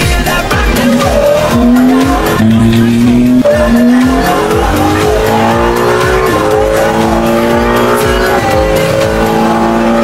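Ferrari 296 GT3 race car's twin-turbo V6 under hard acceleration, its note climbing steadily and dropping back several times at gear changes. Music with a steady beat plays over it.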